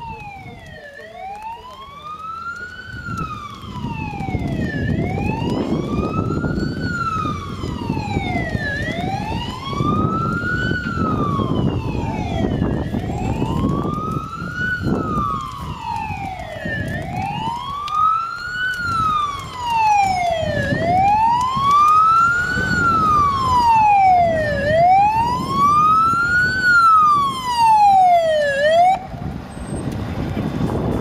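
Tatra fire engine's siren wailing, rising and falling in a slow, regular cycle of about four seconds, over the truck's engine rumble, which grows louder as the truck approaches. The siren cuts off shortly before the end.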